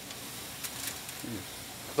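Ribs sizzling over a hickory wood fire on an open brick pit: a steady hiss, with a couple of faint pops about halfway through.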